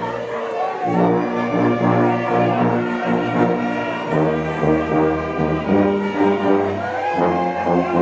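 A church orchestra playing a hymn in held, slow-moving chords. A tuba right beside the microphone carries a loud bass line under the brass.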